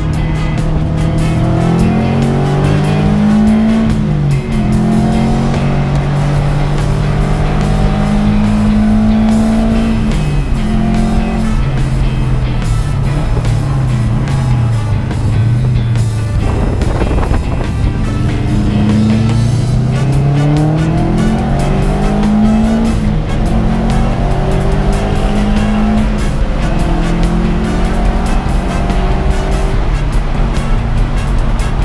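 A 2003 Subaru WRX's flat-four engine running hard under racing load, heard from inside the stripped cabin, its pitch climbing and dropping again and again as it revs up and comes off the throttle through the turns.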